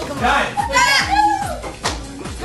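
Excited young voices calling out over electronic dance music with a steady beat.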